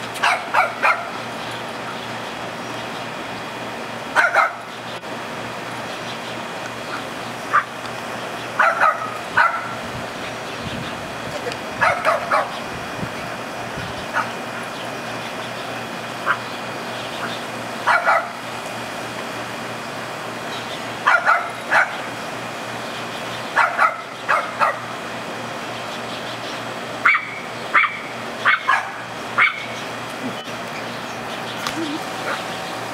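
Small Pomeranian-type dog barking and yipping in play: short high-pitched barks, singly or in quick runs of two or three, every few seconds, over a steady low background hum.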